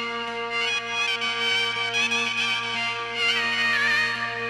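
Turkish folk music on keyboard and bağlama: a steady held drone under a winding, ornamented melody, the instrumental opening of an uzun hava.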